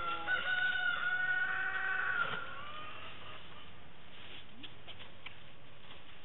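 A rooster crowing once: a long call held on one pitch for about two seconds that falls away at the end.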